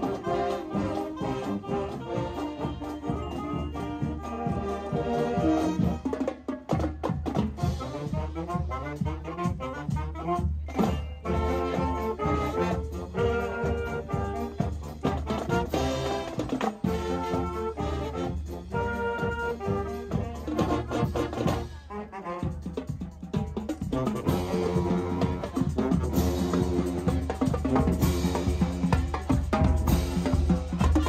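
Marching band playing on the move: trumpets, trombones, saxophones and sousaphones carry the tune over a steady bass-drum beat. The drums get louder and fuller near the end as the drum line comes close.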